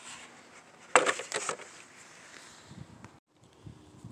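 Hard plastic RC truck body being handled: a sharp knock about a second in, followed by a brief clatter.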